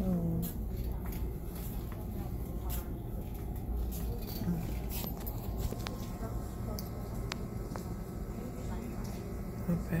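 Shop background sound: a steady low hum with a few small clicks and rustles of handling, and a brief murmur of a voice right at the start.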